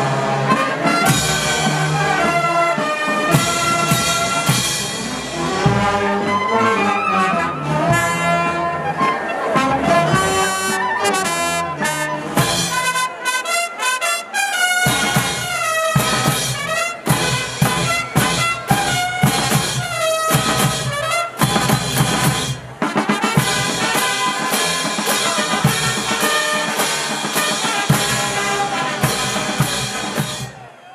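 Brass band playing: trumpets, trombones and saxophones carrying a melody over sousaphones, snare drum and crash cymbals. The low parts drop out briefly about halfway through.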